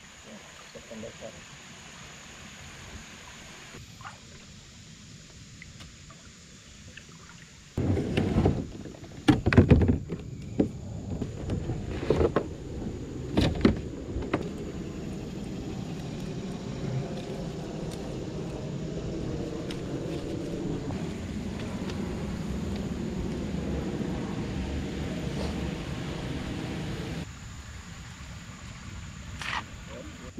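Plastic kayak hull knocking against logs as someone climbs out onto a logjam: a run of loud knocks, then a long stretch of steady rustling and scraping that drops away near the end.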